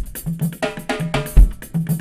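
Live band music, percussion-led, with a heavy bass drum hit at the start and again about a second and a half later.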